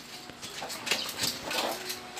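Faint background sounds: a bird cooing softly and a few light clicks.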